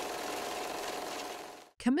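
A steady mechanical whirring and rattling sound effect that fades in, holds, and fades out shortly before the end.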